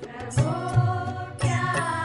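Devotional song: a voice singing a slow melody over instrumental backing, with low drum strokes every half second or so.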